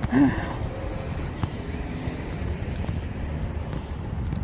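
A woman sighs once at the start, then a steady low outdoor rumble runs on, with a few faint ticks.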